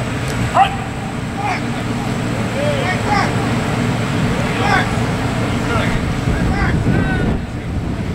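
Short shouted calls from football players and coaches during a drill, scattered about once a second, over a steady low rumble.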